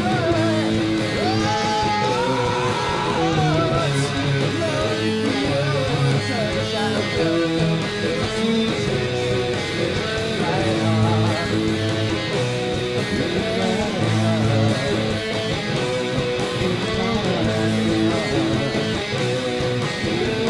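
Music: a Stratocaster-style electric guitar playing along with a band recording of a gothic metal song, with bass notes underneath.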